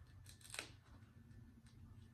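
Near silence with a few faint clicks and rustles of hands handling a shoe rack's metal rods and fabric cover, the clearest about half a second in.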